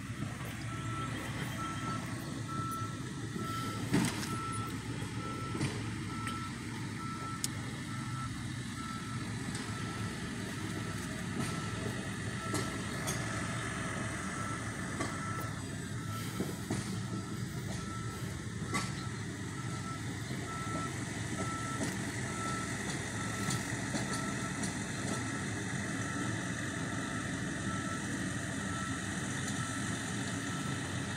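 Backup alarm of a heavy tie-hauling flatbed truck, beeping in an even rhythm as the loaded truck reverses, over its engine running. A single short knock about four seconds in.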